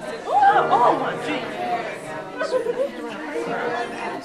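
Audience chatter: several people talking at once in a large room, with one voice louder about half a second in.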